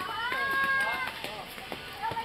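Voices, with one long, high-pitched call that rises and then holds for most of a second near the start, then softer talk.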